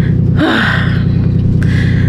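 A woman's breathy sigh about half a second in, over a steady low hum.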